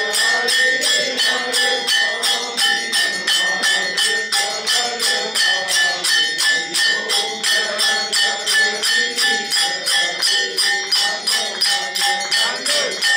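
Devotional aarti music: small brass hand cymbals (manjira) and hand claps keep a steady beat of about three strikes a second, with ringing metallic overtones, under group singing.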